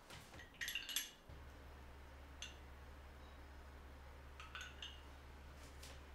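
Faint clinks of glassware and utensils under a second in, then a few light scattered clicks. A low steady hum comes on suddenly about a second in and keeps going.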